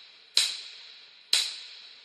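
Sparse percussion opening a pop song: two sharp, snap-like hits about a second apart, each ringing briefly with a bright high tone and fading away.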